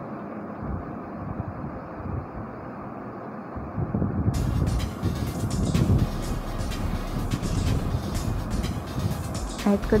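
Maggi noodles simmering and bubbling in spiced water in a metal kadhai. It is muffled at first, then from about four seconds in it turns louder, with spoon clicks and scrapes against the pan as the noodles are stirred.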